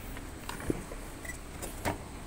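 A few sharp knocks and clicks over a low steady background rumble as someone climbs up into a forklift's cab, its engine switched off.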